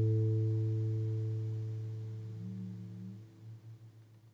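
An acoustic guitar chord ringing out and slowly fading away, its low note lasting longest and wavering slightly as it dies.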